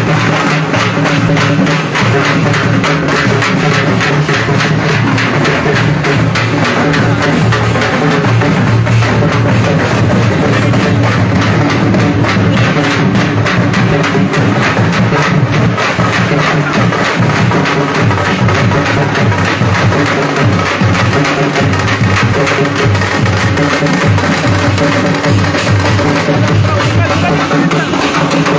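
Loud music dominated by fast, continuous drumming, with no break.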